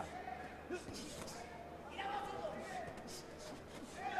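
Faint, distant voices echoing in a large hall, with a dull thump just under a second in.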